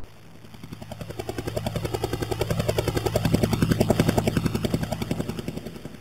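Helicopter rotor chop: a fast, even beat of the blades over a low engine hum. It grows louder to a peak about four seconds in and then fades as the helicopter passes.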